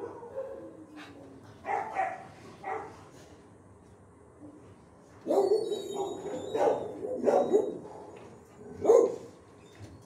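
Dogs barking in a shelter kennel block, in bursts: a few barks about two seconds in, a longer run of barking from about five to eight seconds, and one more bark near the end.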